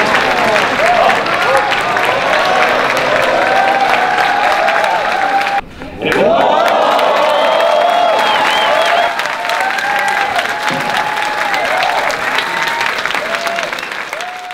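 Large audience applauding and cheering: dense clapping with many whoops and shouts on top. The sound breaks off briefly about six seconds in, then carries on.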